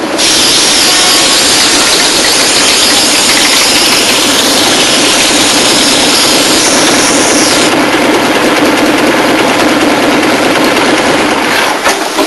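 Motorcycle engine running steadily and loudly, with a little more hiss in the upper range from about two-thirds of the way in.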